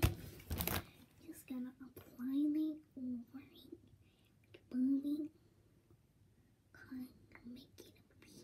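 A young child murmuring short phrases under her breath, in quiet bursts with pauses between. A loud rustle of handling noise against the microphone opens it.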